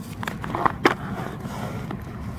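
A few sharp clicks and knocks, the loudest a little under a second in, from a small plastic bottle and a wooden stick handled over a plastic bucket of compost, over a steady low rumble.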